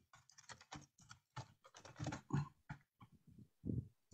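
Typing on a computer keyboard: faint, irregular key clicks with short pauses, picked up through a video-call microphone.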